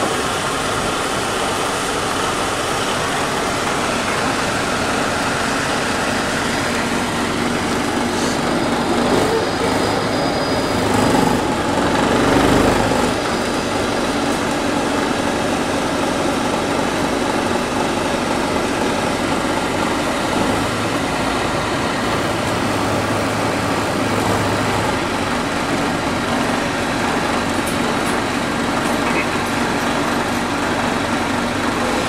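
Airport ramp bus driving across the apron, heard from inside the cabin: a steady drone of engine and road noise that swells briefly about eleven seconds in.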